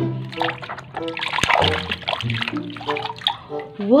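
Water splashing and trickling as hands move a plastic toy ball in a basin of water, with a sharp splash or knock about a second and a half in, over background music.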